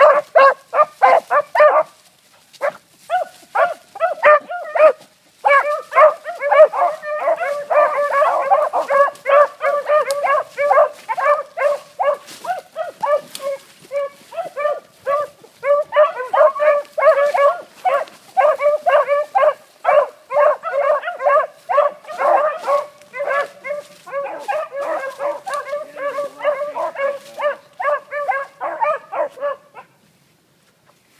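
Several beagles baying as they run a rabbit's track: short, rapid, overlapping cries, several a second, with a brief lull about two seconds in.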